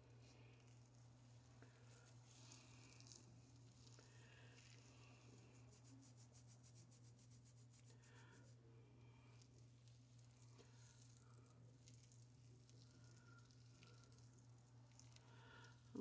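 Near silence: faint squishing and rubbing of hands working cleansing conditioner through wet hair, over a low steady hum.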